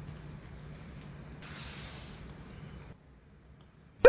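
Faint hiss of water squirting out of a live geoduck, stronger for about a second and a half in the middle, then cutting off about three seconds in.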